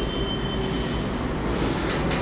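Steady background rumble and hiss, with a faint high-pitched whine through about the first second.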